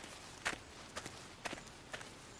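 Faint, evenly spaced clicks or steps, about two a second.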